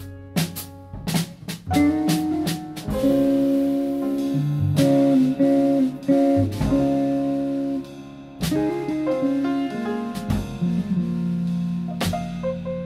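Small jazz group playing: a Gibson ES-335 semi-hollow electric guitar carrying sustained melody notes over piano, plucked upright double bass and a drum kit with scattered cymbal and drum hits.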